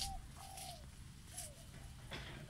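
A dove cooing: three low coos, the middle one the longest, with a light rustle or click at the start and again about one and a half seconds in.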